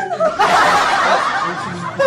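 A group of people laughing: a loud burst starts about a third of a second in and fades away over the second half.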